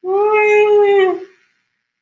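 A woman's voiced yawn: one long yawning tone held at a steady pitch for about a second and a quarter, then stopping.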